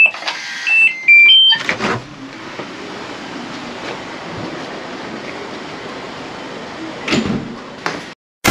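An electronic door lock plays its short tune of stepped beeps as the door is opened, and the door clunks shut about two seconds in. A steady background hiss follows, with a brief knock near the end.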